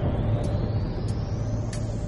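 Low, steady rumble of a Big Bang explosion sound effect dying away slowly. A thin high tone climbs gradually above it, with faint light ticks about every two-thirds of a second.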